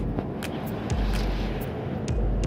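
Road traffic passing close by on a highway: the tyre and engine noise of passing cars swells about a second in and fades, over a low rumble that comes and goes.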